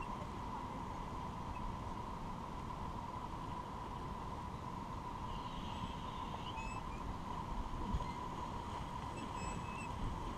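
Steady rush of river current flowing past an inflatable raft on a shallow, rocky rapid, with a soft thump about eight seconds in.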